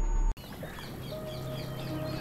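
A music sting stops abruptly about a third of a second in. Birds then chirp repeatedly for about a second over faint background music that slowly swells.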